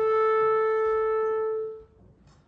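Clarinet holding one long, steady note, which stops shortly before the end.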